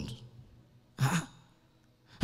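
A man's short breathy exhale into a handheld microphone, about a second in.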